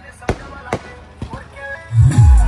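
Aerial fireworks bursting overhead: three sharp bangs about half a second apart, over faint music and voices. Right at the end, loud music with a heavy bass beat cuts in.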